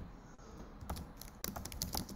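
Typing on a computer keyboard: a scattering of light keystrokes, a few at first and then a quick run of them in the second half, as a short file name is typed in.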